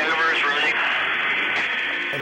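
Spacecraft crew radio transmission: a short burst of a voice in the first moment, then an open channel with steady static hiss, its sound thin and cut off in the treble.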